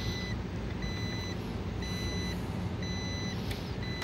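Electronic beeper sounding a steady series of half-second beeps, about one a second, over a low steady hum.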